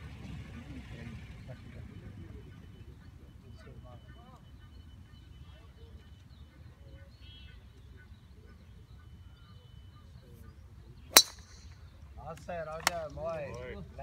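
A golf driver striking a ball off the tee: one sharp crack about eleven seconds in, over a steady low background rumble.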